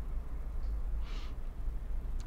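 A low, steady background hum fills a pause in speech. About a second in comes a brief soft hiss, like a quick in-breath.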